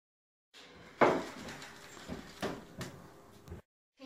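A few knocks and clatter of objects handled on a tabletop, the loudest a sharp knock about a second in, with lighter knocks later, over faint room noise.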